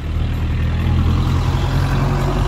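A car passing close by: a steady low engine hum with the rush of tyres on the road.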